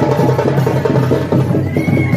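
Fast, loud teenmaar drumming: a dense rhythm of quick drum strokes, with a high held note coming in near the end.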